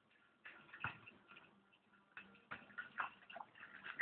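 Faint, irregular light taps and clicks, a handful spread over a few seconds, against a quiet room.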